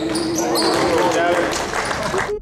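Live basketball game sound in a gym: voices shouting and calling out over the ball bouncing on the hardwood floor, with short sneaker squeaks.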